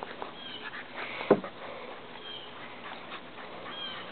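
A puppy playing on grass gives one short vocal sound that falls in pitch about a second in. A few faint, high, short chirps from birds sound in the background.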